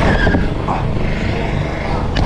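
Rushing wind on the microphone of a rider-mounted camera, mixed with mountain bike tyres rolling fast over a dirt run-in and up a jump ramp, as one steady noise.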